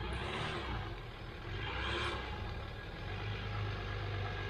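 Land Rover Discovery engine running low and steady as the vehicle creeps through deep mud ruts, with two brief hissing swells about half a second and two seconds in.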